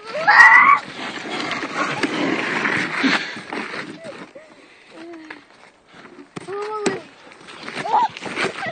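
Wheels of a dog-drawn sled cart rolling fast over a frosty road, a steady rushing noise that fades about halfway through. A high-pitched shout at the very start and a short vocal call near the end.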